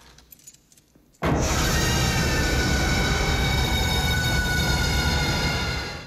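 A horror-film scare stinger: after about a second of near quiet, a very loud, shrill, dissonant held sound bursts in suddenly over a deep rumble and holds steady, easing off slightly at the end.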